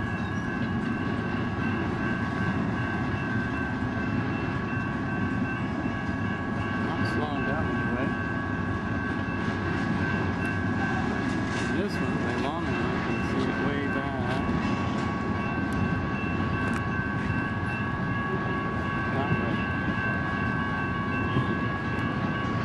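Freight train of double-stacked shipping containers running past, a steady rumble with scattered sharp clicks from the wheels and several steady high tones held over it throughout.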